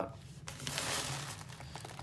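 Thin synthetic fabric of an inflatable sleeping pad crinkling and rustling as it is handled, starting about half a second in.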